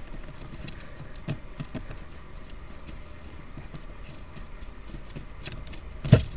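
Faint, irregular light tapping and ticking as metal feeding tongs jiggle a dead mouse over newspaper, over a low steady hum.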